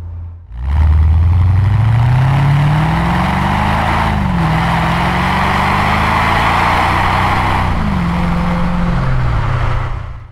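Mercedes-Benz SL55 AMG's supercharged V8 accelerating through the gears. The engine note climbs, drops at an automatic upshift about four seconds in, climbs again and drops at a second upshift near the end. Heavy tyre and wind noise runs underneath, picked up close to the front wheel.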